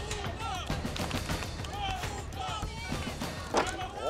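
Several voices shouting over background music, with one sharp knock near the end.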